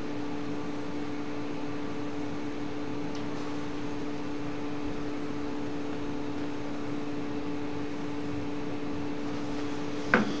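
Steady electrical hum, two constant tones over a background hiss, with nothing else happening.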